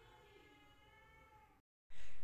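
Faint, drawn-out pitched call, one long sound slowly falling in pitch, cut off by a brief total silence about a second and a half in.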